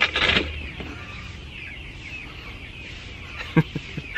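Outdoor garden ambience with birds chirping steadily in the background. A brief louder sound comes right at the start, and another short one just before the end.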